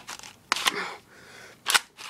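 Spring-powered Stinger S34P airsoft pump shotgun being cocked with effort: sharp clacks of the pump and spring mechanism, a pair about half a second in and another loud one near the end.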